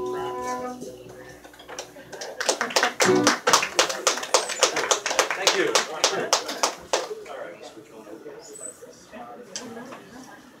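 The last chord of an acoustic guitar, violin and upright bass rings out and fades within the first second, then a small audience applauds for about five seconds after the song, dying down to a murmur near the end.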